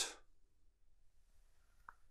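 Near silence, with one faint short click near the end as the cap of a toothpaste tube is opened by hand.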